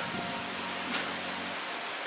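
Steady background hiss and low hum, with one small sharp click about a second in as a metal washer is handled on a grill wheel's axle.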